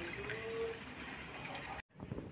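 Faint steady trickle and hiss of water circulating through a saltwater aquarium's filter compartments. The sound cuts out abruptly near the end.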